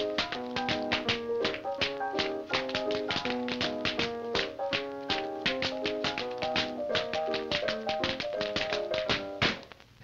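Two tap dancers' shoes clicking out rapid, rhythmic steps over upbeat dance music; both the taps and the music stop about half a second before the end.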